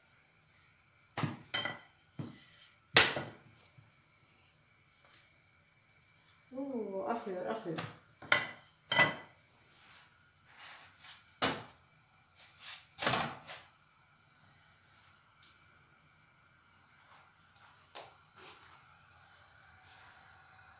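Scattered single knocks and clatters of kitchen work: a thin wooden rolling pin and a frying pan on the counter and gas stove as a round of flatbread dough is lifted and laid in the pan, the sharpest knock about three seconds in. About seven seconds in there is a brief murmur of a woman's voice.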